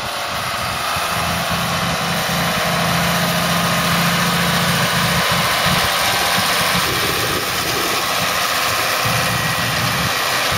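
Tractor diesel engines running steadily, growing louder over the first few seconds as the tractor comes close. A steady low hum sits under a broad mechanical noise, as the New Holland 8360 passes pulling a working McHale F5500 round baler.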